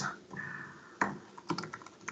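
Computer keyboard being typed on: one sharp keystroke about halfway through, then a quick run of several lighter taps.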